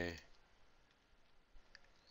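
A couple of faint computer mouse clicks about one and a half seconds in, after the fading end of a spoken word; otherwise quiet room tone.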